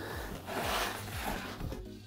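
Background music over soft rubbing and scraping of foam packing against cardboard as a foam-packed part is lifted out of a cardboard box.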